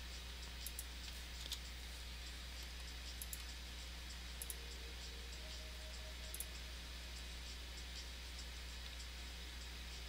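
A few scattered computer mouse clicks, single and in quick pairs, over a steady low hum.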